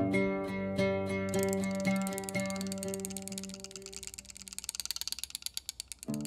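Oud playing a slow phrase in maqam Hijaz, single plucked notes about twice a second, joined about a second in by the rapid shimmering jingles of a riq. The oud fades out in the second half, leaving the riq's soft jingle rolls alone until the oud comes back in at the very end.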